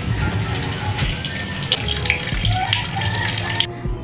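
Water running steadily from a tap, an even rushing hiss that cuts off abruptly near the end.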